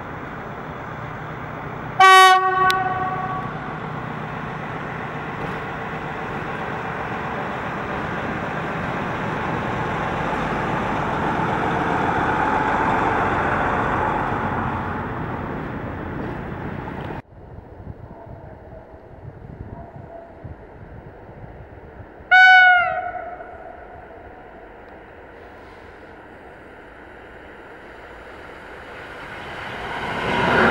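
SM42 diesel locomotive sounding one short horn blast about two seconds in, then the steady running noise of the locomotive and its passenger coaches rolling past, swelling and easing off. After a sudden cut it is quieter, with a second short train horn blast falling in pitch near the middle, and a train growing loud at the end.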